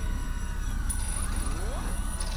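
Synthesized outro sound effect under an end card: a steady low rumble with a sweep rising in pitch in the second half, and a thin high tone joining about halfway.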